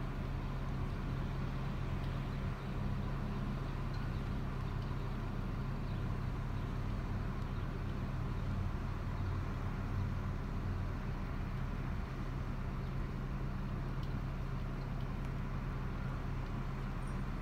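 Steady low hum of an idling car engine, even and unchanging throughout.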